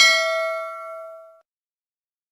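A notification-bell sound effect: a single bright ding with several ringing pitches, fading out after about a second and a half.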